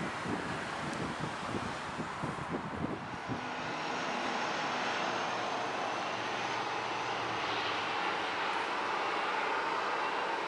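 Dornier 328 turboprop engines and propellers running during a landing: a steady rushing drone with a faint high whine, growing a little louder from about four seconds in. For the first few seconds, wind gusts buffet the microphone over a more distant aircraft.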